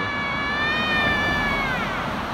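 Street traffic running past, with a single high, steady whine with overtones over it; the whine holds its pitch and then drops away near the end.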